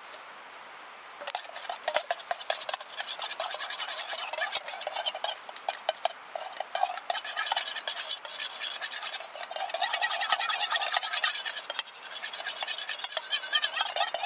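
Rapid, repeated stirring and scraping of a utensil in a metal bowl, with a brief lull about nine seconds in.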